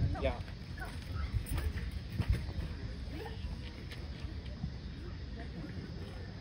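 Outdoor ambience at a ballfield: faint distant voices over a steady low rumble, with a few sharp knocks, the loudest about two seconds in.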